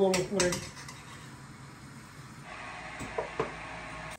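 A metal kitchen utensil clinking lightly against a pot and cutting board, with a couple of sharp clinks about three seconds in. A steady hiss starts about halfway through.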